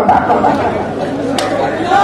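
Crowd chatter: many voices talking at once, with no single clear speaker, and one short click in the middle.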